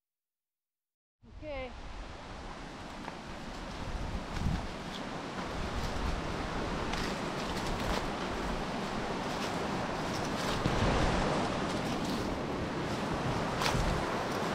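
Steady rush of river water flowing over a riffle, starting about a second in, with wind buffeting the microphone.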